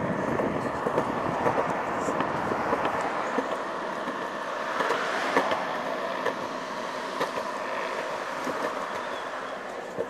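Steady rolling noise of wheels running over pavement, with many small clicks and knocks from the rough surface.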